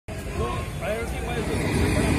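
People talking in the background over a low, steady outdoor rumble of street noise.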